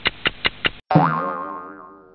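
A cartoon-style 'boing' sound effect: a quick run of five clicks, then a loud wobbling twang that fades out over about a second.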